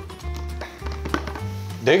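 Background music with held notes and a bass line. Two light taps fall in the middle as a baseball is worked into a clear plastic tube.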